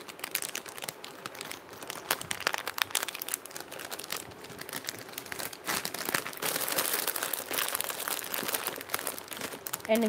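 Plastic packaging crinkling as it is handled, a dense run of quick crackles that grows busier in the second half.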